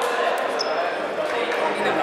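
Babble of many voices echoing in a large sports hall, with a few light knocks and a short high-pitched squeak about half a second in.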